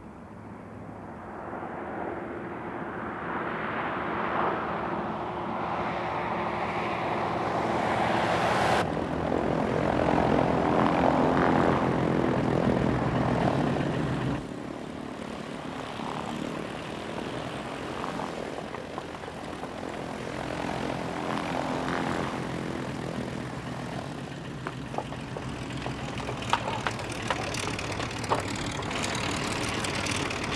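Light twin-engine propeller aircraft flying in and growing louder, loudest about ten to fourteen seconds in, then dropping suddenly and running on more quietly, with a few sharp ticks near the end.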